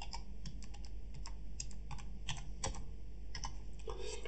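Typing on a computer keyboard: a run of light, irregular clicks.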